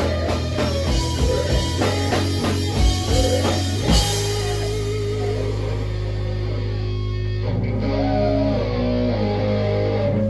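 Live heavy rock band with distorted electric guitar, bass guitar and drum kit playing loudly. About four seconds in, a last big crash ends the drumming, and the guitars and bass ring on as a held drone, with a tone bending up and down near the end as the song closes.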